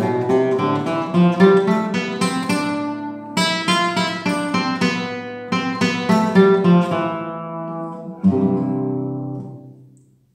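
Nylon-string classical guitar strumming chords in the cururu rhythm, in C major. The last chord, a little after eight seconds in, is left to ring and fade.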